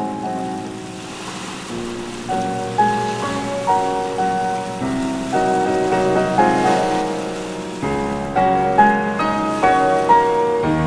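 Slow solo piano music of single notes and chords, each note struck and fading away. The notes grow fuller, with deeper bass, near the end.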